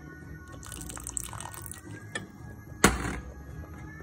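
Sauce pouring from a bottle into a pot of chili, with a few small clicks and one sharp knock nearly three seconds in. Background music plays throughout.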